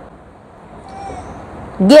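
Low background room noise with a faint, brief tone about a second in, then a woman's voice starting near the end.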